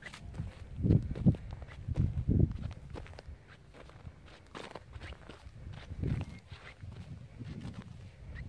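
Footsteps crunching over loose, broken rock on a stony slope, with small stones clicking and shifting underfoot at an uneven walking pace.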